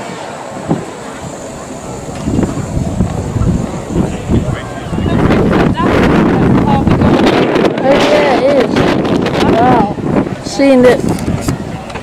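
Wind buffeting the camera microphone, growing stronger about five seconds in, with people talking in the background.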